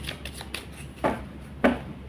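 A deck of tarot cards being shuffled by hand: a run of soft papery card clicks, with two louder slaps of cards about a second in and near the end.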